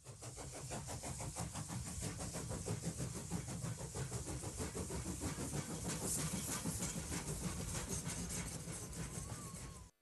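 Steam locomotive running, its exhaust chuffing in a quick, steady rhythm.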